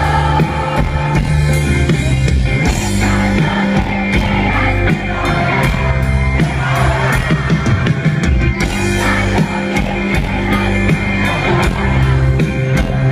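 Live rock band playing an instrumental passage: electric guitars, bass guitar and drum kit, loud and continuous, heard from within the audience.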